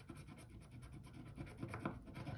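Scratch-off coating on a small paper scratcher card being scratched off in quick, faint, repeated strokes.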